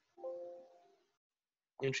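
A single chime about a quarter of a second in: a ding of several steady tones together that fades out within about a second. A man's voice speaks briefly near the end.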